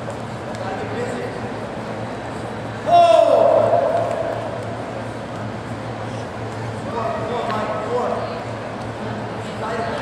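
Gym crowd voices over a steady low hum, with one loud drawn-out shout about three seconds in and more scattered voices near the end.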